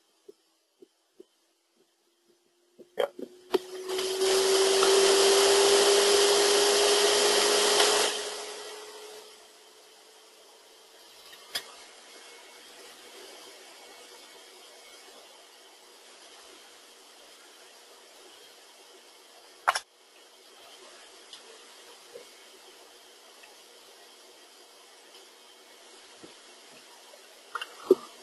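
Soundtrack of a computer animation playing through a browser: about half a second of silence-broken start, then a loud rushing noise with a low hum that slowly rises in pitch for about four seconds, fading to a faint steady hiss with two sharp clicks.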